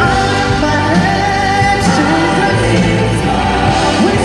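Gospel choir singing with musical accompaniment, voices holding long notes.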